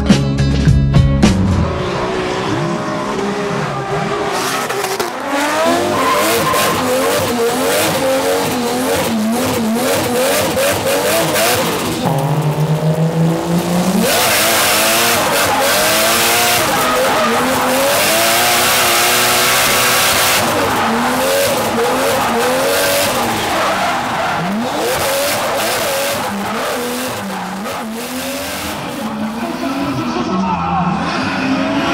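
Drift cars' engines revving hard and dropping off again and again as they slide, with tyre squeal and skidding noise; the tyre noise is loudest in a long stretch around the middle. Music plays briefly at the very start.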